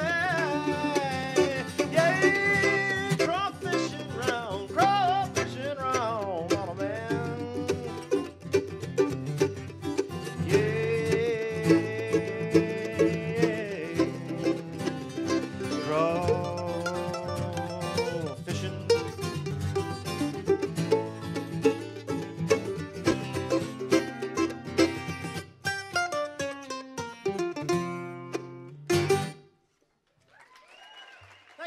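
Acoustic guitar and mandolin playing a bluegrass instrumental passage of plucked runs and strummed chords, stopping together abruptly about a second before the end.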